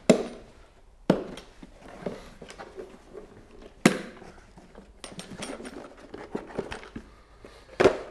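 Sharp plastic snaps and knocks as a car's plastic air-filter box is unclipped and opened and the filters are handled: three loud snaps, at the start, about a second in and just before four seconds, with lighter clicks and rattling later.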